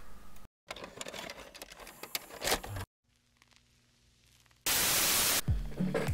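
Edited VHS-tape transition effect: faint crackle and clicks, a moment of near silence, then a loud burst of tape static lasting under a second near the end.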